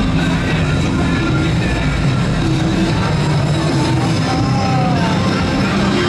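Loud music playing steadily.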